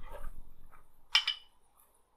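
Two glass beer bottles clinked together in a toast: one short, bright clink a little over a second in.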